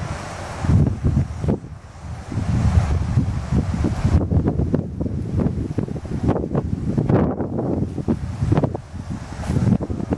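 Wind buffeting the microphone: an uneven low rumble that rises and falls in gusts.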